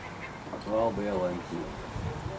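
A man's voice calling out briefly, about half a second in: a short, pitched, two-part call.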